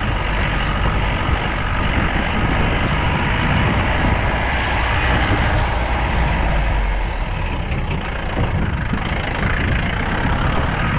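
Off-road jeep driving along a rough dirt track: the engine runs steadily under load, mixed with continuous wind and road noise at the open side of the vehicle.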